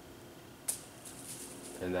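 Faint outdoor woodland ambience with one sharp click or snap about two-thirds of a second in, followed by faint high chirping.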